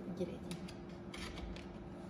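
A few small, sharp metallic clicks and scrapes as a crocodile clip is handled and clipped onto the metal plate of a parallel-plate capacitor, over a steady low electrical hum.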